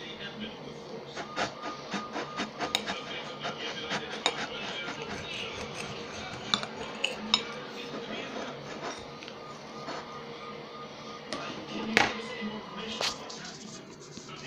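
Table knife cutting a breaded chicken sandwich on a ceramic plate: a run of short clicks and scrapes of the blade against the plate, with a louder knock about twelve seconds in.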